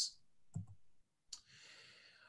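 A single faint mouse click a little past a second in, advancing the presentation slide, followed by a soft intake of breath.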